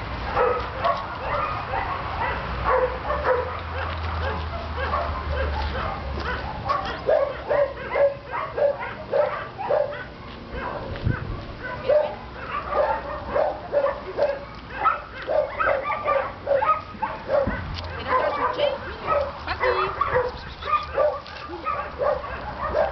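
Several dogs barking and yipping without a break, short overlapping barks at different pitches coming a few times a second, as from kennels full of dogs.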